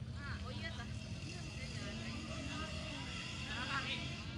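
Distant shouts and calls of football players on an open pitch, a brief call early and a louder one near the end, over a steady low rumble.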